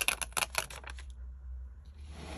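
A quick run of about ten light clicks and taps in the first second, from hands handling a glossy sticker sheet against a spiral-bound planner.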